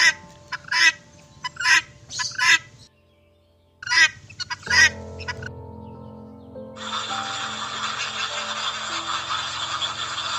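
Guineafowl giving short, harsh calls, four in quick succession about a second apart, then two more after a brief pause, over a faint steady background tone. From about seven seconds in, a steady hissing noise takes over.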